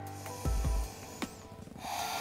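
Soft background music under a woman's breathing during a held yoga pose, with a hissing breath near the end. A low thud about half a second in.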